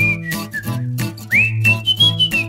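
Upbeat jingle music: a whistled tune with pitch glides over a stepping bass line and a steady drum beat.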